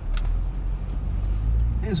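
Cabin noise of a 2012 Honda Accord Euro on the move: a steady low rumble from its 2.4-litre four-cylinder engine and the tyres on the road, with one short click just after the start.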